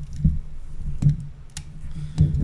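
A few sharp, separate clicks from a metal side kickstand being handled.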